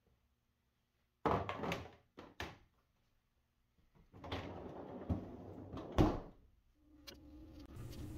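A clatter of plastic in a refrigerator's freezer drawer, then two small clicks. The drawer rolls along its rails and shuts with a sharp knock about six seconds in.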